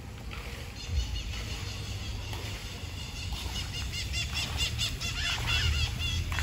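Birds chirping in quick runs of short, high repeated notes, getting busier in the second half, over a steady low rumble.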